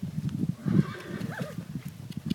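Yearling horse's hooves striking the dirt as it moves on the lunge, with a short whinny about a second in.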